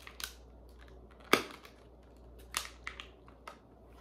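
Thin plastic clamshell packaging of a Scentsy wax bar cracking and popping as it is pried and flexed to get the wax out. There are several sharp snaps, the loudest about a second in.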